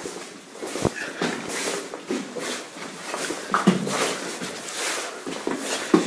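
Footsteps on a wet, gravelly mine floor, one every half second or so, with close breathing and a few sharp knocks from boots striking rock and debris, the loudest near the end.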